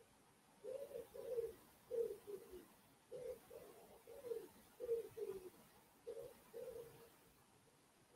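A pigeon cooing faintly: three phrases of low, slightly falling coos, the last phrase shorter.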